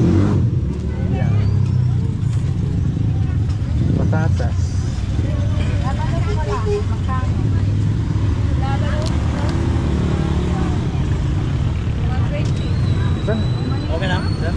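Busy market street: a steady low rumble of motor-vehicle engines and traffic, with scattered background voices of people talking.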